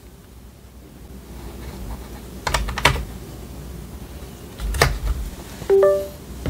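USB thumb drive being pushed into a computer's USB port: handling rumble and a few sharp clicks, the loudest about two and a half, three and five seconds in. Near the end a short rising two-note chime sounds from the computer: Windows' sound for a newly connected device.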